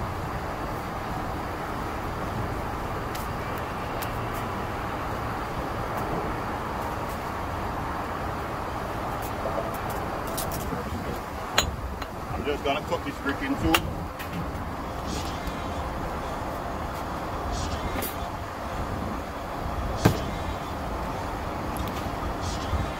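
A brick hammer striking and chipping a clay brick to trim it: a few sharp, separate clicks, the loudest near the end. Behind them runs a steady hum of distant traffic.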